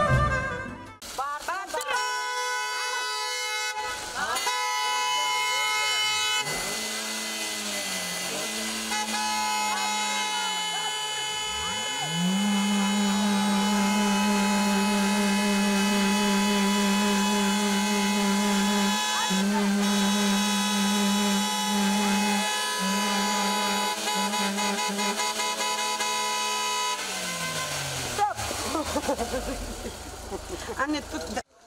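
Several car horns held down together in long, steady honks, a lower-pitched horn joining about twelve seconds in; near the end the pitches slide down and stop. Sustained honking of this kind is the horn-blowing of a wedding convoy.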